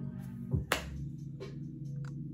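Soft background music with sustained low notes. A single sharp snap-like click comes a little under a second in, with a fainter click about half a second later.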